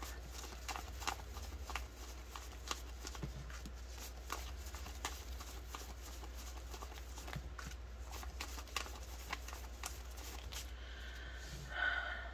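Australian polymer banknotes being counted through by hand: a light, irregular run of crisp flicks and rustles as each note is peeled off the fanned stack.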